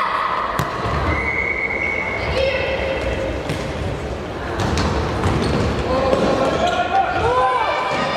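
Futsal ball being kicked and bouncing on a wooden hall floor, several sharp thuds scattered through, echoing in a large sports hall, with children's and adults' voices calling out over the play.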